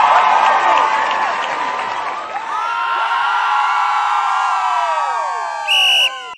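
A crowd cheering, with many overlapping whoops and yells. Near the end comes a short, loud, high steady tone, like a whistle blast.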